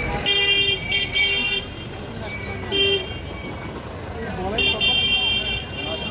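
Vehicle horns honking in street traffic: a long honk near the start broken once, a short toot about three seconds in, and another long honk from about four and a half seconds on.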